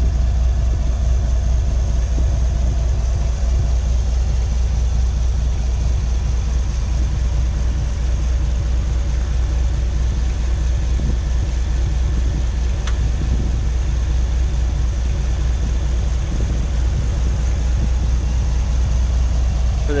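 GM Gen V L83 5.3-litre V8 idling steadily with an even, low rumble.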